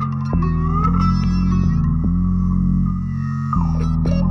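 Instrumental passage of a song, with no singing: plucked guitar notes over held bass notes. The notes change about a third of a second in and again near the end.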